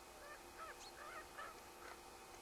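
A faint, quick run of short animal calls, five or six in about a second and a half.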